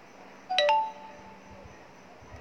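A short electronic notification chime of two quick notes, the second higher and ringing on briefly, about half a second in.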